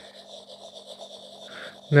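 A fingertip rubbing back and forth across a smartphone's glass touchscreen while scribbling, a faint scratchy rasp over a steady low hum.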